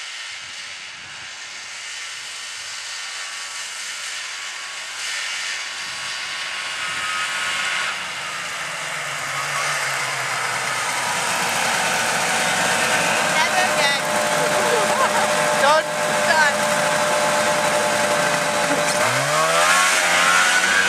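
Vintage two-stroke snowmobile engine running as the machine rides closer, growing steadily louder. Near the end the engine pitch dips and then rises sharply.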